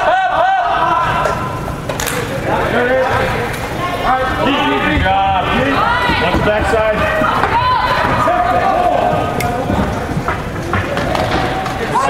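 Several voices shouting and calling out indistinctly, echoing in a large indoor arena, with sharp knocks about two seconds in and again near the end.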